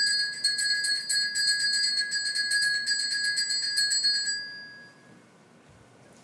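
Altar bells shaken in a rapid, continuous jingling ring for the elevation of the chalice at the consecration, stopping about four seconds in and dying away over the next second.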